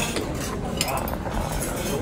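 Metal cutlery clinking against plates and serving dishes, with a few sharp clinks.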